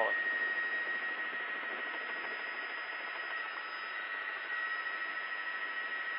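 Steady hiss of a helicopter intercom channel: the cabin noise comes through the crew's headset microphones muffled and thin, with a faint steady high whine.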